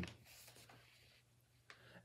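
Near silence with a faint rustle of a paper sheet being handled, and one faint tick near the end.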